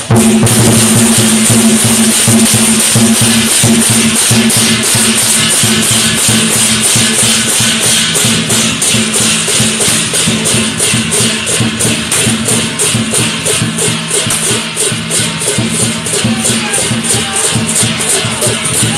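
Chinese festival percussion of the lion-dance kind: drums and crash cymbals beaten fast and continuously, loud, with a steady low ringing tone underneath.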